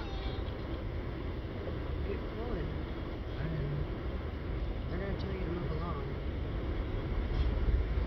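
Steady low rumble of slow-moving traffic and the car's own running, heard from inside the car cabin, growing a little louder near the end. Faint voices come through in the background.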